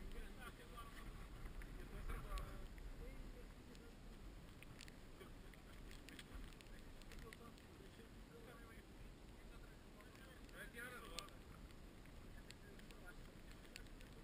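Faint wind on the microphone, a steady low rumble, with faint voices in the background now and then.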